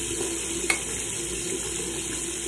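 Plastic cap of a mouthwash bottle being twisted open, with one sharp click about two-thirds of a second in, over a steady background hiss.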